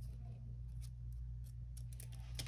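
Scissors making a few faint snips through a thin strip of printed paper, over a steady low hum.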